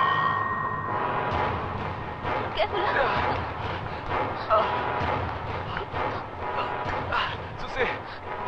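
Several agitated voices calling over one another, with no clear words. A steady high tone cuts off about a second in.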